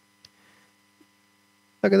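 Faint steady electrical hum in a pause between speech, with a couple of tiny ticks; a man's voice resumes near the end.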